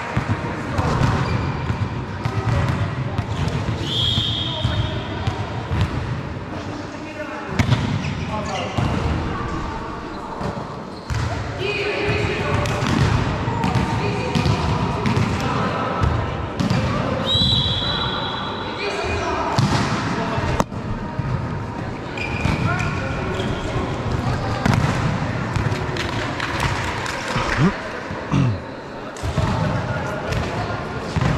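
Volleyball being played in a large indoor hall: the ball being struck and bouncing off the court floor, with players calling out and talking.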